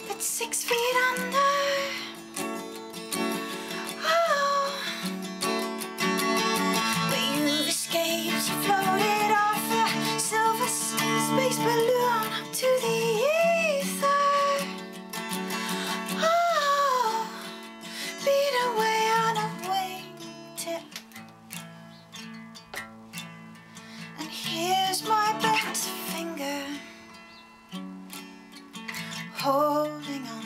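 A woman singing with her own strummed acoustic guitar, the voice in long sliding phrases. After about twenty seconds the voice mostly drops out and the guitar plays on more softly, with the singing returning briefly near the end.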